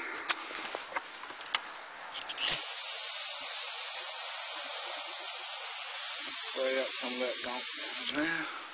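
Aerosol spray can releasing one continuous, loud hiss that starts suddenly about two and a half seconds in and cuts off sharply at the end. A few light clicks and handling knocks come before it.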